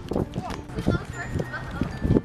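Young children's voices and chatter without clear words, with scattered short knocks and taps.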